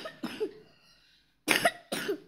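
A person coughing: two pairs of short coughs, the second pair, about a second and a half in, louder than the first.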